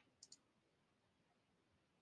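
Near silence, broken by one faint computer-mouse click, a quick press-and-release pair, about a quarter-second in.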